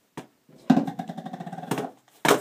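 Cardboard tissue box being shoved across a sink counter by a cat: a short knock, then about a second of rapid, juddering scrape that ends in a bump.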